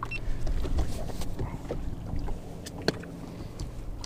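Low rumble of wind and water on a small fishing boat drifting on choppy water, with a few light clicks and knocks of gear being handled; the sharpest click comes just before three seconds in.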